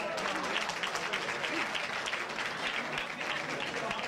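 Audience applauding as a sung improvised Basque verse (bertso) comes to an end: many hands clapping in a dense, steady patter.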